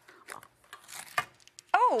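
Faint rustling and scattered clicks as a metal Collin Street Bakery fruitcake tin tied with a ribbon is handled and its lid worked open, followed near the end by a woman's short 'Oh'.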